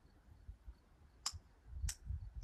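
Two short, sharp clicks about half a second apart, over a faint low rumble of wind on the microphone.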